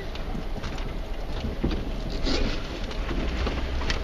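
Off-road 4x4 crawling slowly over rock: a steady low engine rumble with the tyres crunching and crackling on rock and loose gravel, scattered small clicks throughout.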